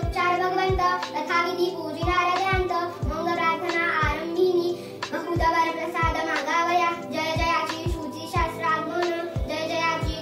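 A young girl chanting a Marathi devotional stotra in a sing-song voice, over background music with a sustained drone and a steady low drum beat roughly every half to two-thirds of a second.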